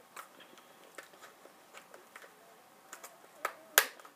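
Scattered light clicks and taps from handling a football helmet and mouth guard, with one sharper click near the end.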